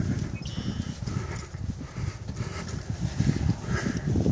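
Wind buffeting the microphone in uneven low gusts.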